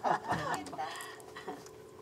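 A short burst of laughter and chatter from a small group, dying away after about half a second to quiet room sound with faint voices.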